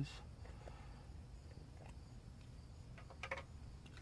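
Quiet background with a steady low hum and a few faint clicks a little after three seconds in.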